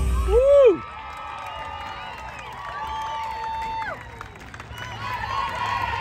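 Cheer routine music with a heavy bass beat, cutting off less than a second in. It is followed by scattered cheering and drawn-out yells from many voices.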